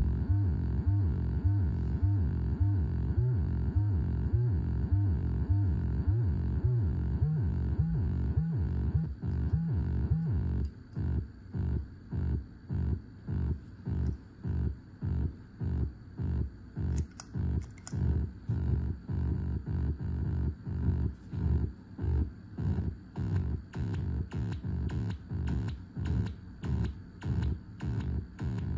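No-input feedback loop through a chain of effects pedals (Hotone tremolo, Boss SL-2 Slicer, Alexander Syntax Error): a low electronic drone chopped into steady rhythmic pulses a couple of times a second. About ten seconds in the chopping deepens, so each pulse stands apart with near silence between, and a few faint high clicks come about two-thirds of the way through.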